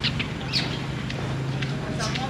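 Outdoor ambience with small birds chirping: a few short high calls, the clearest about half a second in, over steady background noise and a low hum.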